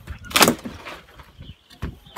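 A laying hen being pushed back into its wooden coop by hand: a short, loud scuffle of wood and feathers about half a second in, then a few lighter knocks and rustles.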